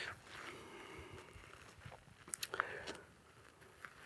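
Faint, slow footsteps of boots on hard, dusty dirt as a person walks in a crouched heel-toe stalk, with a few short crunches a little past halfway.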